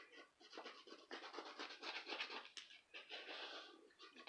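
A coin scratching the coating off a lottery scratch-off ticket in quick, repeated rasping strokes, fairly quiet.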